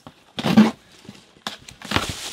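Cardboard box being opened and handled: a short scraping rustle about half a second in, then a few light clicks and taps near the end.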